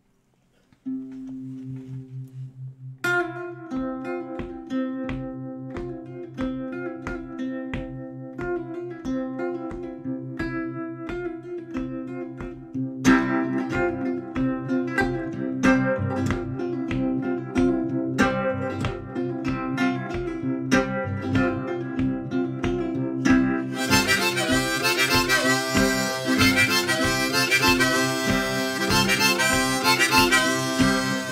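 Blues played on an archtop guitar and a harmonica in a neck rack. After a held note about a second in, a picked guitar riff with a steady beat starts about three seconds in and gets louder around the middle. The harmonica comes in loudly over it near the end.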